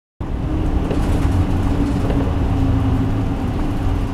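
Mitsubishi Fuso Aero Star (MP35) city bus on the move, heard from inside the passenger cabin: a steady engine drone with a constant hum over low road rumble, and a few faint rattling clicks.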